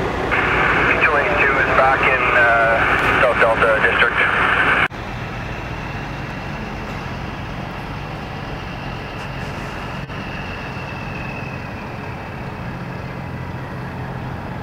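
Fire department dispatch radio traffic from a scanner: a thin, narrow-band voice for about the first five seconds, cut off abruptly. It is followed by a steady low hum of idling engines from stopped highway traffic.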